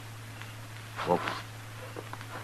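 A pause in an old radio drama recording: a steady low hum runs underneath, and a man says a single drawn-out "Well" about a second in.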